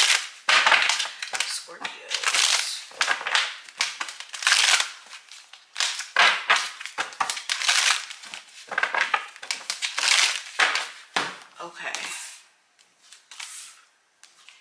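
A deck of tarot cards being shuffled by hand: a quick, irregular run of papery snaps and rustles. Near the end, cards are laid down on the table.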